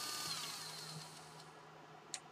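Small DC gear motor winding down after a limit switch cuts its power: its whine falls in pitch and fades out over about a second and a half. The motor coasts on because the limit switches have no electronic braking.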